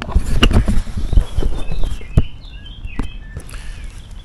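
Handheld camera being handled and moved with footsteps on the woodland floor: a quick run of knocks, thumps and rustles over the first two seconds or so. It then quietens, with a few faint bird chirps a little before the end.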